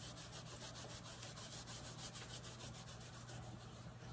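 A wipe rubbed quickly back and forth across a metal nail-stamping plate, a faint, rapid swishing of about ten strokes a second.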